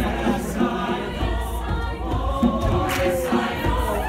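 Mixed choir singing an upbeat gospel-style song in many parts, with a few hand-drum or clap strokes under the voices.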